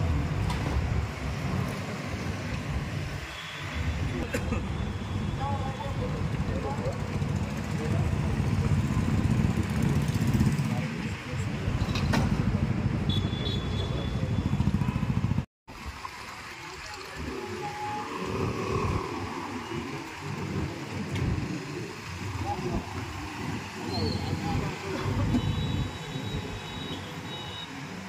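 Road traffic noise with passing motorcycle and car engines, and people talking over it. It drops out to silence for an instant about halfway through, then comes back sparser.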